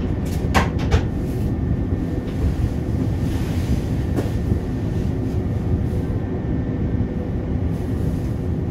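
Cab of a Škoda RegioPanter electric multiple unit standing at the platform: a steady low rumble with a faint hum. A few sharp clicks come within the first second.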